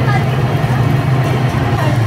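Electric potter's wheel running with a steady low motor hum as it spins the clay, with faint voices over it.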